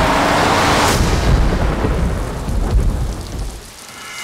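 Thunder rumbling over heavy rain, loud at first and dying away near the end.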